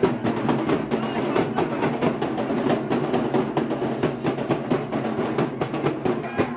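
Several dhak drums, Bengali barrel drums beaten with sticks, played together in a fast, dense, unbroken rhythm of many strokes a second.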